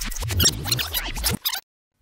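Video-rewind sound effect: garbled, squeaky, sped-up audio that cuts off suddenly about a second and a half in.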